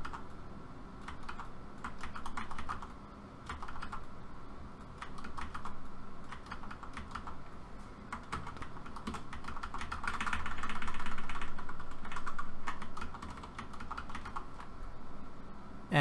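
Computer keyboard keys tapped in quick, irregular clicks, as frames are stepped through and an object is nudged into place in 3D software.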